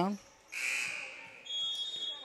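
Gym scoreboard horn sounding one buzzy blast of about a second for a substitution, then a steady high-pitched tone near the end.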